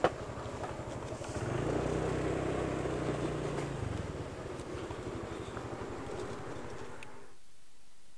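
A sharp click right at the start, then a motorcycle engine pulling away with a steady note that fades as the bike rides off. The sound cuts off suddenly near the end.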